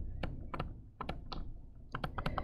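Stylus tip tapping and scratching on a tablet screen while handwriting: a scatter of light, irregular clicks.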